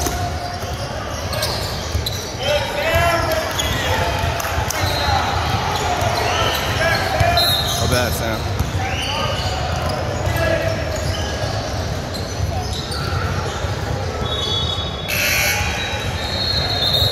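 Basketball being dribbled on a hardwood court in a large, echoing gym, with players' voices calling out. A few short, high sneaker squeaks come in around the middle and again near the end.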